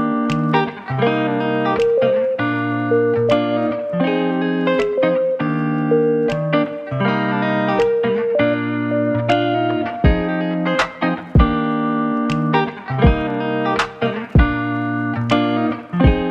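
Instrumental background music with sustained pitched notes and a steady beat. Deeper drum hits come in about ten seconds in.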